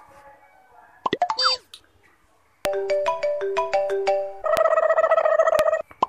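Mobile phone ringtone: a short tune of clean electronic beeps starting a little over two and a half seconds in, then a buzzier held chord for over a second that cuts off. About a second in there is a brief popping sound effect with gliding pitch.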